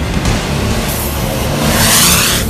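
Can-Am side-by-side off-road vehicle accelerating past, its engine note rising and a loud rush of noise peaking near the end, over background music.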